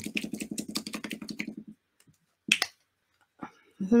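Small plastic squeeze bottle of paint being shaken hard for under two seconds: a fast, even rattle of clicks, about a dozen a second. Then it stops.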